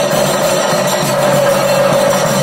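Chenda drums played together in a fast, unbroken stream of strokes, with a steady ringing tone running through the rhythm.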